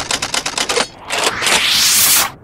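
Edited intro sound effects: a quick run of sharp clicks like typing, then a rising whoosh of noise building toward the end.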